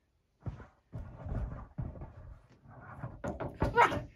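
Rustling and bumping, then a few sharp knocks near the end.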